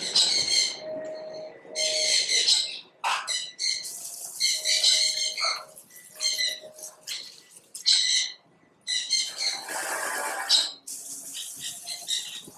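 Birds calling: a series of short, harsh, high-pitched calls repeated with brief pauses between them.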